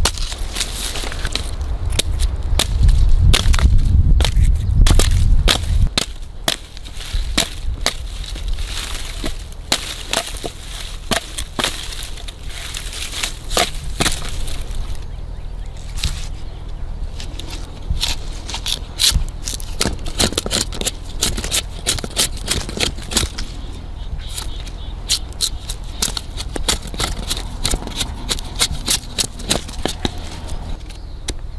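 Knife blade scraping and shaving the tough outer fibrous layer off a fresh yucca flower stalk: rapid crisp scraping strokes with sharp cracks as fibres split away. A low rumble under the strokes for the first six seconds.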